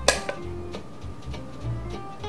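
Background music, with a sharp clink of a metal scoop against the cooking pot right at the start and a lighter tap shortly after.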